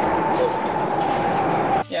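Kitchen extractor hood fan running: a loud, steady rush of air with a hum that rises slightly in pitch. It cuts off suddenly near the end.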